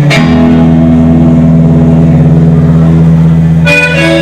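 Loud live band music led by an electric bass guitar: one low bass note and one chord held steady, moving to a new chord near the end.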